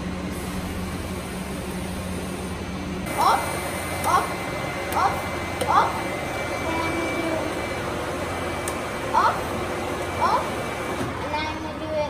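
Steady electrical hum and fan noise from fiber laser equipment and its cooling unit; the deeper part of the hum drops out about three seconds in. Six short chirps sound between about three and ten seconds in.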